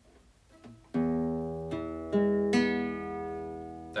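Nylon-string classical guitar fingerpicked: the open low E with the thumb and strings four, three and two with the fingers, sounding an E major chord. Four plucks about half a second apart start about a second in and are left ringing.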